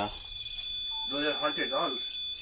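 A REM pod ghost-hunting sensor sounding its alarm: one steady high-pitched electronic tone, the sign that the device has been set off. A man's voice speaks over it in the second half.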